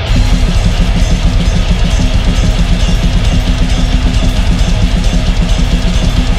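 A rock band playing loud, heavy music live with no vocals: electric guitar, bass guitar and a drum kit. A louder, driving section kicks in right at the start, with a held low note under a fast, even beat.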